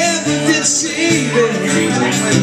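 Two acoustic guitars strummed together, playing a country-style song live.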